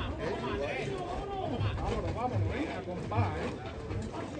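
Background chatter: several voices talking at a moderate level, with no single voice standing out.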